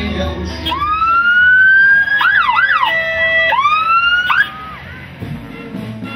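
A siren sounds, rising in pitch to a held wail, then breaking into a few fast up-and-down whoops and a short steady tone. It rises once more and cuts off suddenly about four and a half seconds in.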